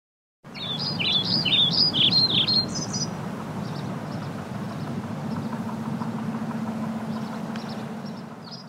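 City traffic ambience: a steady hum of freeway traffic cuts in about half a second in, with birds chirping rapidly over it for the first few seconds.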